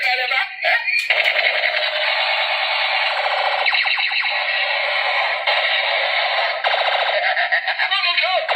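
Electronic sound effects from a battery-powered light-and-sound toy gun's small speaker: a tinny, fast-warbling buzz that starts about a second in and shifts its pattern every second or two.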